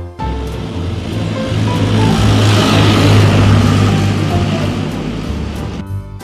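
A military tank's engine and tracks running as it drives by, a heavy rumble that grows to its loudest about halfway through and fades again near the end.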